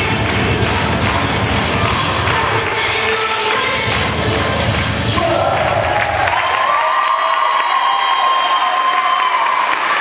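Loud cheer-routine music with heavy bass for about the first six seconds, then the music stops and the crowd cheers, with long held shouts of voices.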